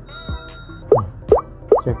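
Playful background music: one short note that falls in pitch early on, then from about a second in a regular run of short notes that slide quickly upward, about two to three a second.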